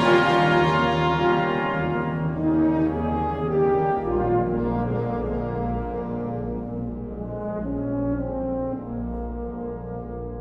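Wind orchestra playing held chords over sustained low bass notes, growing gradually softer through the passage.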